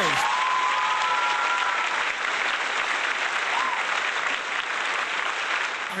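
Audience applauding steadily for an award winner, with a few short cheers early on.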